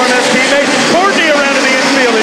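Engines of a pack of midget race cars running together on a dirt oval, a steady drone with some rising and falling revs, heard in the broadcast mix.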